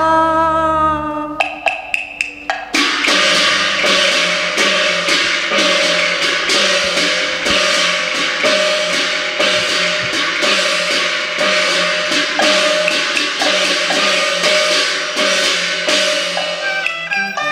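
Cantonese opera accompaniment band playing an instrumental passage: a held note, then a quick run of sharp wood-block strikes a second or so in, then the full ensemble of percussion and strings in a busy rhythmic passage.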